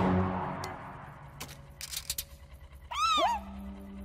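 Background music fading out, a few short clicks, then about three seconds in a cartoon slug creature gives a short squeaky chirp that rises and falls in pitch.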